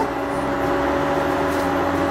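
Steady hum of an induction cooktop heating a pan, its fan and coil holding a constant drone with a few fixed tones.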